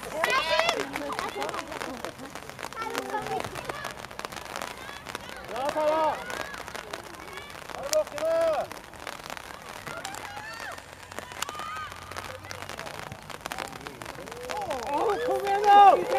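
Shouts and calls from players and spectators at a girls' football match, coming in short scattered bursts and loudest near the end.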